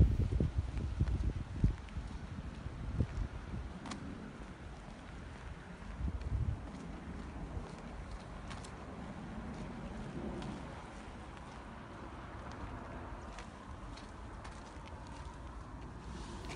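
Footsteps walking along a partly snowy road, with a low, uneven wind rumble on the microphone.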